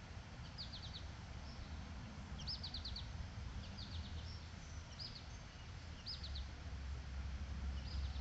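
A small songbird singing short bursts of quick, high chirps, roughly one burst a second, over a low, steady background rumble.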